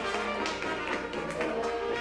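Traditional Dixieland jazz band playing in ensemble, with trombone and clarinets carrying the lines and sharp percussive taps cutting through several times.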